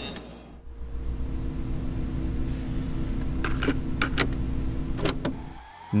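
A small electric motor running with a steady hum, with several sharp clicks in the second half; it stops shortly before the end.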